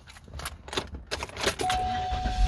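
Keys jangling in a run of quick clicks and rattles. A steady electronic tone starts near the end.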